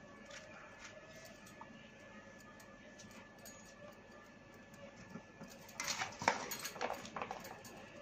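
A kitchen knife cutting vegetable pieces by hand, with the pieces dropping into a metal bowl: mostly quiet at first, then a run of quick sharp clicks and taps over the last two seconds or so.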